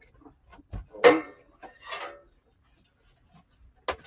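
Handling noise from a dress form being carried and set on its metal stand: scattered knocks and clicks, with two louder noisy bursts about one and two seconds in.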